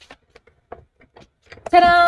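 Hand-cranked Stampin' Up Stamp & Cut & Emboss die-cutting machine rolling the plates and die through: a sharp click, then a run of light, irregular ticks. Near the end a voice holds a drawn-out vowel on one steady pitch.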